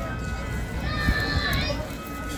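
Freight train of autorack cars rolling steadily past at a street crossing with a low rumble. Voices from a crowd, children among them, sound over it about midway.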